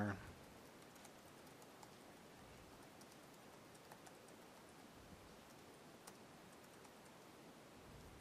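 Faint typing on a computer keyboard: soft, irregular key clicks over quiet room noise.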